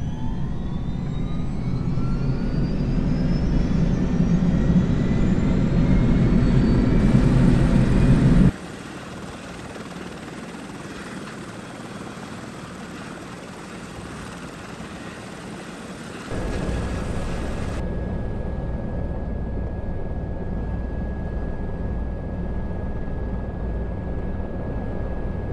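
Airbus EC130 helicopter's Safran turboshaft engine starting: a whine rises steadily in pitch over a loud low rumble as the turbine spools up. About eight seconds in it drops abruptly to a quieter, even running noise. From about sixteen seconds it is louder again and steady, with a constant high tone.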